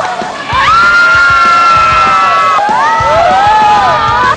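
Several women shrieking and squealing in excitement, long high-pitched cries that glide up and hold, over background music.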